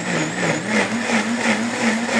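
Electric countertop blender running at speed, puréeing canned corn kernels with milk. Its motor tone is steady and wavers a little, stepping slightly higher about half a second in.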